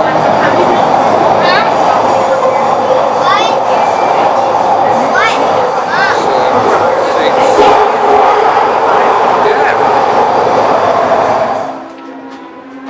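SkyTrain car in motion, heard from inside the car: a steady loud running noise with a thin high whine and several short rising squeals. The sound drops off suddenly just before the end.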